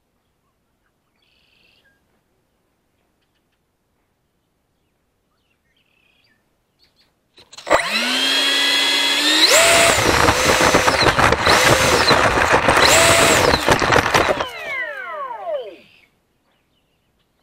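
The electric ducted fan of an RC model jet spools up from rest about halfway through with a rising whine. It runs up to high throttle, a loud rushing whine that swells twice. Near the end the throttle cuts and it winds down with a falling whine.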